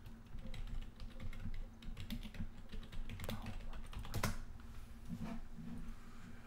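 Typing on a computer keyboard: irregular, fairly faint keystroke clicks.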